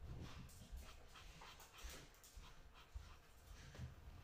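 Faint, quick strokes of a black Posca paint marker's tip scratching across grey paper as a background is filled in, about three strokes a second.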